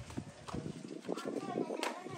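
Footsteps and sandals clacking on tiled steps as several people walk up and slip their sandals off, a string of short irregular clicks with a louder one near the end.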